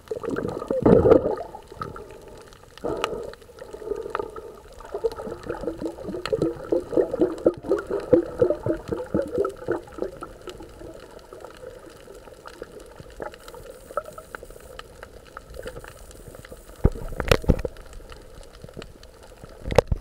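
Underwater water noise picked up by a camera below the surface: sloshing and bubbling, with a loud surge about a second in, a run of quick pulses in the middle, and another short surge near the end.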